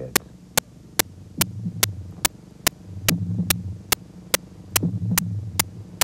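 Tense documentary underscore: a sharp tick about two and a half times a second over a low throbbing hum that swells and fades.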